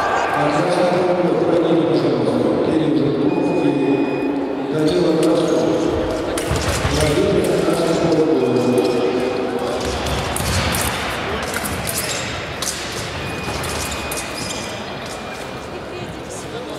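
Indistinct voices echoing in a large sports hall, with scattered knocks and a few faint, brief high beeps.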